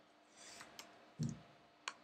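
A few quiet mouse clicks and key presses on a computer, as a value is typed into a field, with one short low sound a little after a second in.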